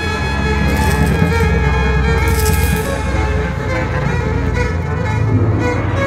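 Instrumental jazz-ensemble passage: brass lines over a strong, steady low bass, with bright splashes high up in the first half.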